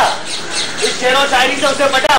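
Loud, high-pitched shouting voices of street-play performers.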